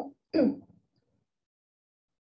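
A woman's voice: a short voiced sound with falling pitch just after a word, like a hesitation, then dead silence for over a second.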